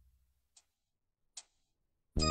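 Near silence with two faint clicks, the second one louder.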